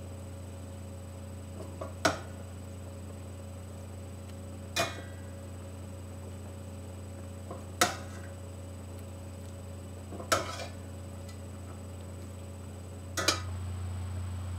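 Metal kitchen tongs clinking against a skillet as pieces of cooked chicken are set into the sauce: five short, sharp clinks about every two and a half to three seconds, over a steady low hum.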